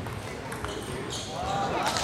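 Table tennis rally ending with a few light clicks of the ball off bat and table in the first second. Then spectators' voices rise in a reverberant hall, getting louder toward the end.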